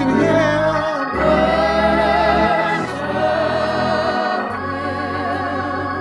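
Gospel worship song: a lead singer and backing vocalists singing into microphones, with held, wavering notes over a low bass line that changes note every second or two.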